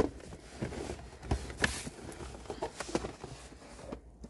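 Handling noise: scattered, irregular knocks and rustles as a cardboard box full of VHS tapes is lifted and moved up close, the cassettes' plastic cases knocking against each other.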